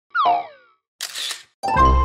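Cartoon sound effects for an animated logo intro: a quick falling boing-like glide, then a short burst of noise about a second in. Near the end, a held musical chord with a deep bass note begins.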